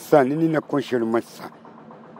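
An elderly man speaking into a handheld microphone for about a second, then a pause.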